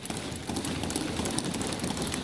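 Many members of Parliament thumping their desks in approval: a dense, steady patter of knocks.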